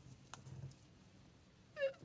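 Quiet pause with faint handling of paper journal pages: a light tick or two in the first second as a page is lifted.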